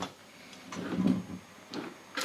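The rack's two small 40 mm cooling fans starting up and running once SATA power is connected, with a faint thin high whine.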